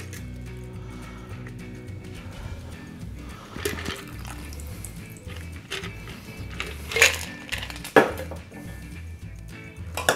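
A shaken cocktail strained from a metal shaker tin over ice into a rocks glass, a thin stream of liquid pouring, with a few sharp clinks about four, seven and eight seconds in. Background music plays throughout.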